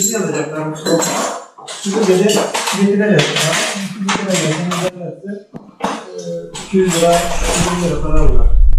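Metal clinking and clattering from fitting a wall-mounted split air conditioner and a curtain rail, with a voice going on over it. A low hum comes in near the end.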